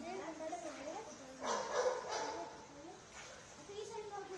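Indistinct voices close by, with a louder, sharper sound that breaks in about a second and a half in and lasts under a second.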